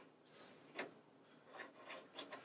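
Steel guide bush being slid onto a lathe tailstock guide bar by hand: a faint metal rub with one light click a little under a second in and a few softer taps near the end.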